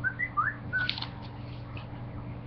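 About five short whistled chirps, mostly rising in pitch, within the first second, followed by a brief rustle or click.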